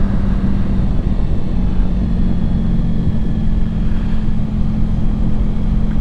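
Honda ST1100 Pan European motorcycle's V4 engine running steadily at road speed, its note holding at a steady pitch, with wind rumble on the microphone.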